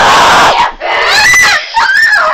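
A child screaming at full volume. A harsh, rough shriek lasts about half a second, then come two shorter, higher yells that waver in pitch.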